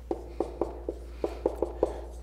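Dry-erase marker writing on a whiteboard: a quick run of short strokes, about four a second.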